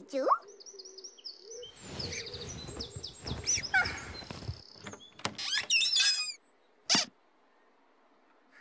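Playful sound effects: a run of high whistles and chirps, a rushing whoosh with falling chirps over it from about two to four and a half seconds in, then squeaky warbling calls and one short chirp near the end.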